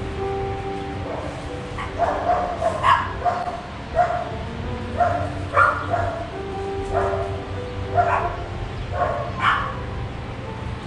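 A dog barking repeatedly, about once a second, starting about two seconds in, over soft sustained background music.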